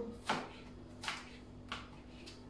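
Kitchen knife cutting bell pepper ends on a cutting board: three short, separate knocks of the blade, spaced under a second apart, the first the loudest.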